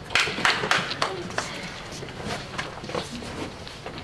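A team of players crowding into a huddle: shuffling feet and rustling clothes under low murmured voices, with a few sharp hand smacks or claps in the first second and a half.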